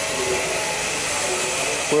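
Steady hiss and hum of the pyrolysis plant's running machinery, with a few faint steady tones in it.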